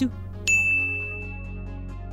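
A single bright ding, a confirmation-chime sound effect, strikes about half a second in and rings on one high tone for about a second and a half over soft background music.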